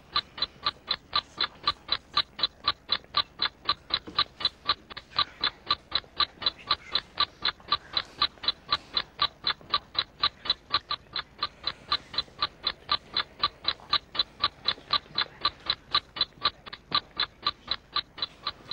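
Countdown-timer ticking, even and clock-like at about four ticks a second, marking a one-minute preparation time.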